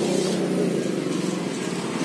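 A small motor running steadily with a low, even, rapidly pulsing hum.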